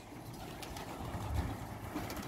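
Domestic pigeons cooing faintly at their loft over a low rumble of wind on the microphone.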